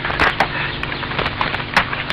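A scatter of light, irregular knocks and clicks over a steady low hum.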